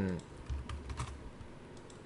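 A few scattered clicks of computer keyboard keys being pressed, faint, over a low hum.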